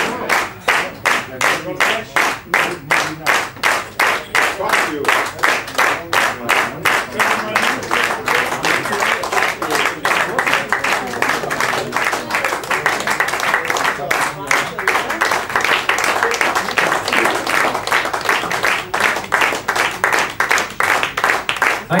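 An audience clapping in time, about two and a half claps a second, loosening into less regular applause mixed with voices in the second half.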